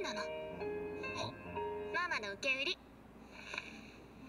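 Japanese anime dialogue over soft background music with long held notes. The voice speaks in short phrases during the first three seconds, then only the quiet music is left.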